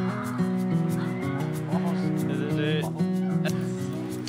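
Background music with a steady beat, over which a pug whimpers and yips a few times in short, wavering high sounds.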